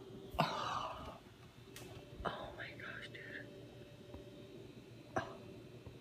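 A person whispering and breathing close to the microphone, with a few sharp clicks, over a faint steady hum.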